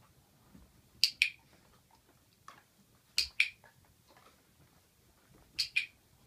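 Dog-training clicker pressed three times, each a sharp double click, marking the dog's correct position.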